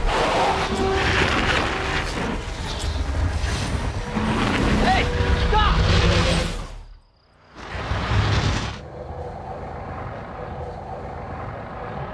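Film sound effect of a dense, rumbling roar from the Hex's energy wall as it expands, with shouted voices over it. About seven seconds in it cuts out abruptly, surges once more briefly, then gives way to a quieter steady rumble.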